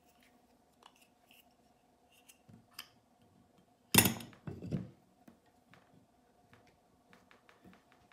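Grundfos circulator pump motor housing set down onto its cast-iron volute: small metal clicks of handling, then one sharp metal knock about halfway through as it seats, and a second lighter knock just after.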